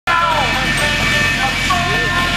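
A loudspeaker announcer talking over a steady high whine and low hum from the F-4 Phantom jet engine of a jet-powered school bus, idling as the bus rolls slowly.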